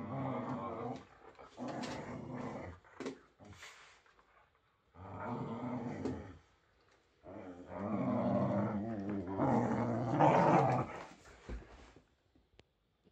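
Whippets growling in play while mouthing and tugging a toy between them, in about four bouts of a second or more with short pauses; the longest and loudest bout comes near the end.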